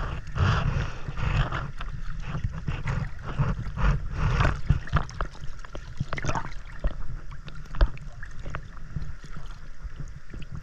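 Water sloshing and splashing around an action camera held at the surface while a swimmer kicks with fins, with a heavy low rumble of water against the camera and many small uneven splashes and gurgles.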